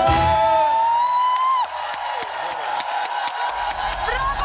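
A live band performance with hand drum ends on one long, slowly rising held note that stops about one and a half seconds in. A studio audience cheers and whoops for the rest.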